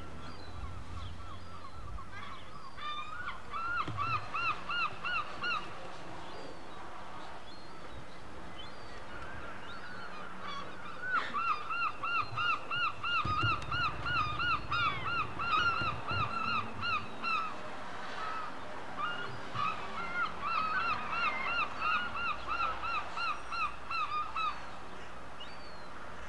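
A bird calling in runs of rapid, evenly repeated notes, about four a second, in three bouts: a short one a few seconds in, a long one around the middle, and another near the end, over a steady background hiss.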